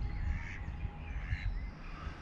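A crow cawing twice, harsh calls a little under a second apart.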